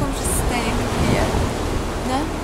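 A steady rushing noise, heavy in the low end, with a woman's voice speaking briefly over it.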